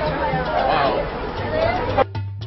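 Indistinct chatter of several voices over general background noise, with a low steady hum coming in near the end.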